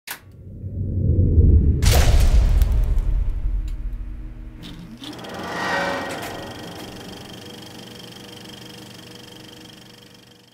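Sound effects for an animated title sequence: a deep rumble swells up, a metallic clang hits at about two seconds, a whoosh rises around five to six seconds, then a ringing tone holds and slowly fades.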